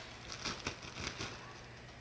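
Faint rustling and a few light taps of a disposable KN95 mask being handled.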